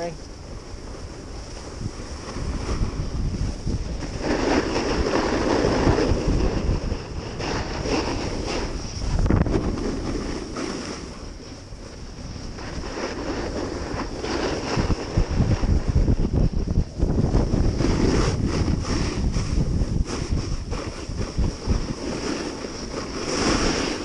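Wind buffeting the microphone of a rider-worn camera on a downhill ski run, mixed with the hiss and scrape of edges sliding over packed snow. The noise swells and eases every few seconds as the rider turns.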